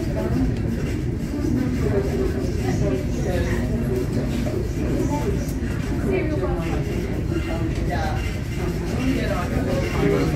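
Indistinct chatter of several people over a steady low rumble.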